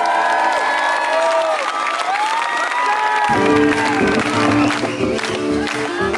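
Live rock band music with the audience cheering and whooping over it. About three seconds in, the full band comes in with bass and low chords.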